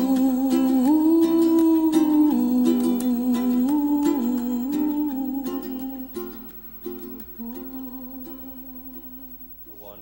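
Slideshow background music: a hummed or sung melody of long held notes over a plucked-string accompaniment, fading out over the last few seconds as the song ends.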